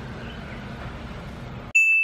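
Faint steady background noise, then near the end the sound cuts out abruptly to a single clear ding that rings and fades: a chime sound effect marking a scene transition.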